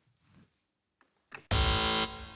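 Near silence, then about one and a half seconds in a contestant's quiz buzzer goes off: a loud, steady electronic tone that cuts in suddenly and rings on.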